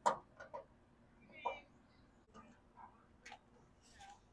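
A few light, irregular clicks and taps from hands pressing a rubber grommet into a drilled hole in a metal diamond-plate battery box, the sharpest click at the very start and a brief squeak about a second and a half in.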